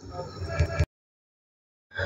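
A short snatch of a person's voice, rising in loudness, that cuts off suddenly under a second in, followed by about a second of dead silence, as at an edit in the recording.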